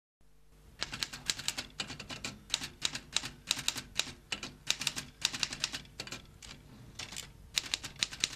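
Rapid, uneven keystroke clicks of typing, like a typewriter, several strokes a second with short pauses between runs.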